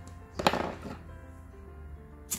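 Small scissors snipping the crochet yarn once, a sharp click about half a second in, over steady background music.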